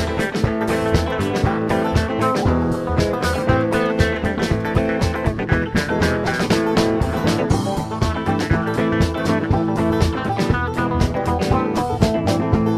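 Live band playing with electric guitars and a drum kit, a steady, quick beat carrying on without a break.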